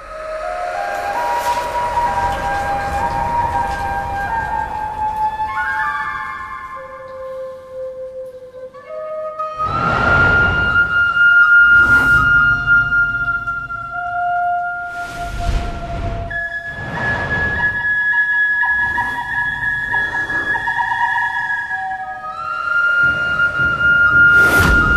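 A Chinese bamboo flute (dizi) plays a slow, haunting melody of long held notes over a dramatic score. In the second half, several loud rushing swells of noise sweep through the music.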